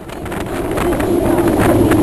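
Wooden roller coaster train rolling along its track: a steady rumble with scattered clacks of the wheels on the wooden track, rising in level over the first second.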